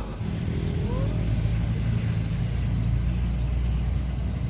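Small petrol engine of a kato, a small wooden fishing boat, running steadily, with a brief rise in pitch about half a second in.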